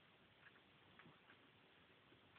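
Near silence with a few faint, irregular clicks, some in quick pairs: a dog's claws on a hard floor as it moves with its hind legs dragging after spinal surgery.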